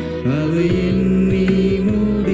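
Live Tamil Christian worship song: a singer holds a long note over electronic keyboard, electric bass and cajon, with short regular cajon strokes keeping the beat.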